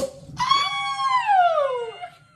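Cork popping out of a bottle of sparkling wine, one sharp pop, followed by a woman's long excited scream that slides down in pitch.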